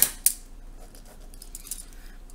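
A pen being put down on a desk beside a spiral notebook: two sharp clicks at the very start, about a quarter second apart.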